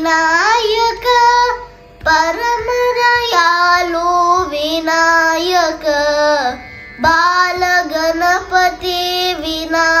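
A boy singing a Carnatic devotional piece in raga Nata, gliding between held notes on long vowels. He pauses briefly for breath about two seconds in and again about seven seconds in.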